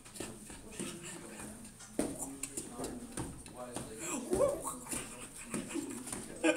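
Wordless voice sounds with sliding pitch, and a sharp knock about two seconds in.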